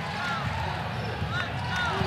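Live basketball court sound: a basketball being dribbled on the hardwood floor and several short sneaker squeaks over the steady murmur of the arena crowd.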